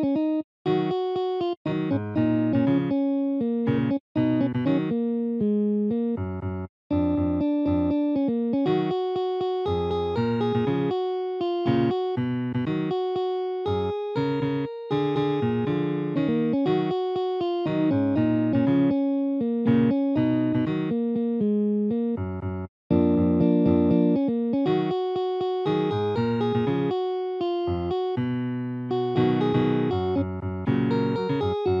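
Synthesized guitar playback of a tab: one clean, electronic-sounding guitar part playing short notes and two- to four-note chords at 120 BPM. The sound cuts out to silence for a moment about five times, at the rests.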